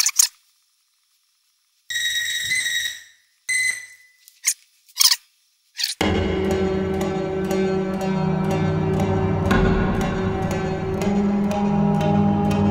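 Brief snippets of a mandolin recording auditioned in a DAW, with a few clicks. About six seconds in, a dark layered piece starts: low sustained drone tones under plucked mandolin notes repeating about three times a second.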